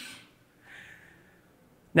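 A man's short, soft intake of breath in a pause between sentences; the rest is quiet room tone.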